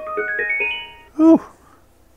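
Sylvania SP770 Bluetooth boombox speaker sounding its pairing chime: a quick rising run of electronic notes, each held over the last, fading out after about a second, as a phone connects to it over Bluetooth.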